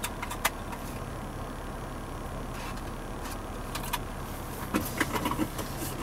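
Steady low hum of a car engine idling, heard from inside the cabin. A few light clicks and taps come from a plastic CD case being handled, two of them in the first half second.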